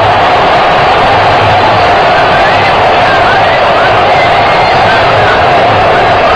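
Packed football stadium crowd making a loud, steady din of many voices, with a few faint higher shouts standing out above it.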